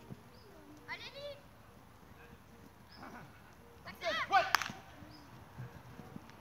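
Children's high-pitched shouts during a football drill: a short cry about a second in, then a louder burst of yelling around four seconds in, ending with a sharp knock.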